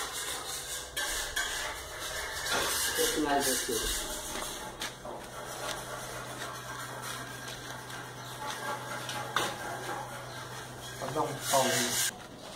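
Scraping and handling noises with a few sharp clicks as hands work inside a freshly built masonry oven. Brief indistinct voice sounds come twice, and a steady low hum runs through the middle.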